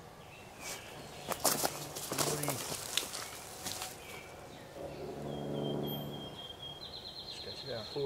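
Rustling in leaf litter and small clicks as a tape measure is handled over a dead wild turkey, with a low murmured voice about halfway through. A high, thin steady tone starts about five seconds in and steps up in pitch near the end.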